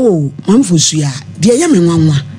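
Speech only: a woman talking at a studio microphone.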